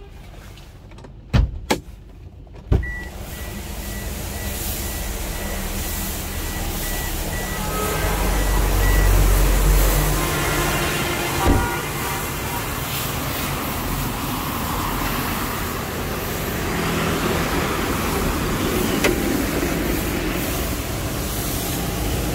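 Knocks of a car door being opened and shut in the first three seconds, then a rapid high beeping for a few seconds. After that comes steady vehicle and road-traffic noise that swells at about eight to ten seconds, with one sharp knock near the middle.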